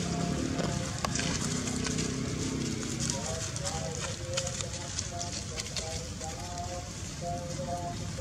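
People's voices talking indistinctly, giving way about three seconds in to a run of short repeated tones, with light clicks scattered throughout.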